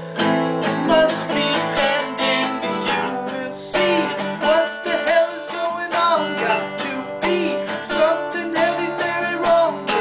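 Harmonica held in a neck rack, played with bending notes over a strummed guitar in an instrumental break between sung verses.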